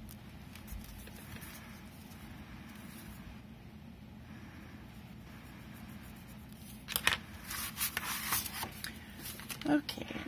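Low, steady room hum for about seven seconds. Then a stiff kraft-paper card is picked up and handled against a cutting mat, giving a run of sharp papery rustles and scrapes. A voice starts just at the end.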